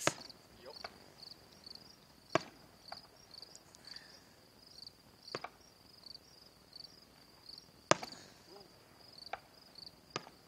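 Distant aerial firework shells bursting: sharp bangs every two to three seconds, the strongest about two and a half and eight seconds in, over crickets chirping steadily.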